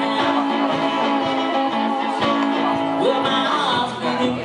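Acoustic guitar strummed in a folk-blues style, with a man singing over it at the microphone.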